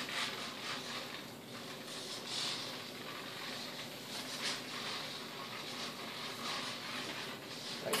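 Faint rubbing and handling noises as a foam RC glider is picked up and tilted, with brief brighter rustles about two and a half and four and a half seconds in.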